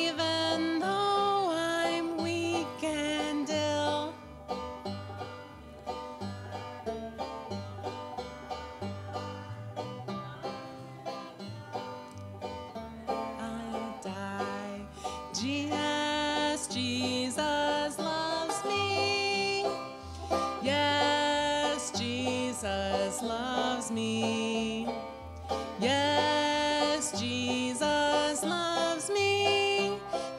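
A woman sings a hymn, accompanying herself on the banjo. The singing drops out for about ten seconds in the middle, leaving only the banjo picking, then returns for the last half.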